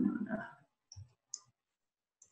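Two short clicks of computer keys, about a second in and a third of a second apart, as typed text is deleted in an editor.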